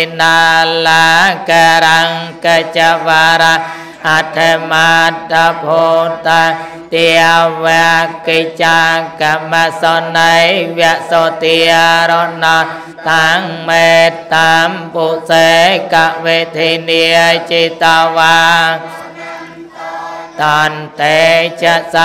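A Buddhist monk chanting into a microphone in a melodic, drawn-out recitation of held and gliding notes, with a steady low hum beneath. The chant breaks off briefly about two seconds before the end, then resumes.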